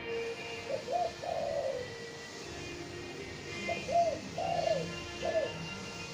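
Spotted dove cooing: two phrases of three to four soft, arching coos, the first about a second in and the second about four seconds in.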